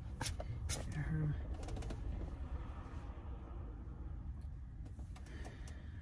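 Steady low rumble inside a car cabin, with a few light clicks and one short, low coo-like sound in the first second and a half.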